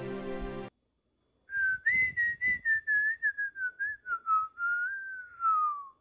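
The background music stops short about half a second in; after a brief silence, a person whistles a short tune, a single clear line of quick notes that wavers and slides downward in pitch before stopping.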